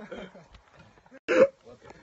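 A man's short, pained yelp about a second and a quarter in, preceded by faint grunting, as he sinks to his knees after shotgun recoil struck him in the groin.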